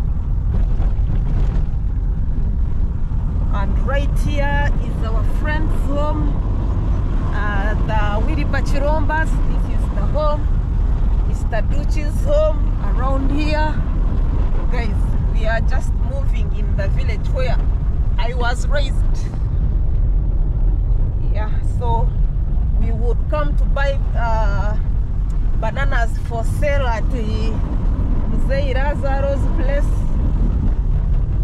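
Inside a moving car on a dirt road: a steady low rumble of engine and tyres, with people talking over it from a few seconds in.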